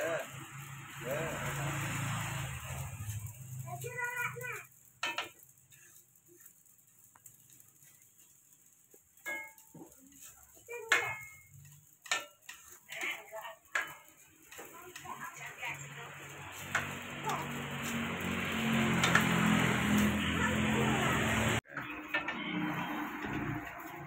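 Metal spatula knocking and scraping in a wok as fried rice is stir-fried, with sizzling. The frying noise swells loud over several seconds, then cuts off suddenly about three seconds before the end.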